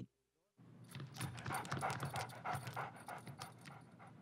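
A dog panting quietly, with quick soft breaths starting about half a second in.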